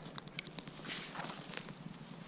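Footsteps of a person walking over a pine-forest floor of moss, fallen needles and dry twigs, with scattered small crackles and a soft swish about a second in.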